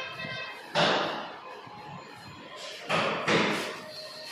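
Laminated wardrobe doors being pushed shut and opened by hand: a sharp knock about a second in, then two more close together near the end, each dying away quickly.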